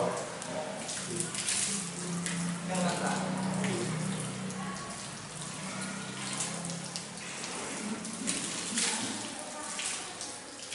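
Water running from wall-mounted ablution taps and splashing as someone washes under the tap.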